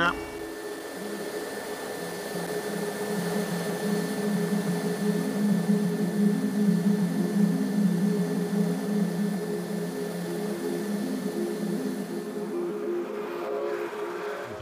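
Rescue helicopter running on the ground just after landing: a steady turbine whine over the rotor noise, with no change in pitch.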